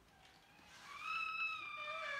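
A baby's long, high-pitched squeal, starting just under a second in and held with a slight rise and fall in pitch.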